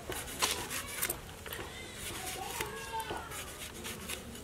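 A ripe tomato being cut against an aruvamanai, the fixed upright iron blade of a traditional cutting board: a few soft cuts and sharp clicks, the strongest about half a second and a second in. Faint voices run underneath.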